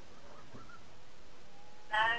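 A pause in a phone call: a steady faint hiss, with a voice answering right at the very end.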